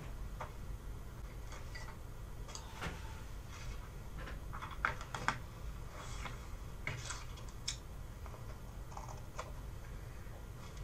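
Scattered light taps, scrapes and rustles of a paintbrush working on a sheet of paper and the paper being shifted on a table, over a low steady hum.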